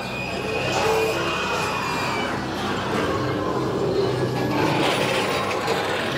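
Haunted-house ambient soundtrack of music and mechanical effects at a steady loudness, with a held high tone over the first two seconds.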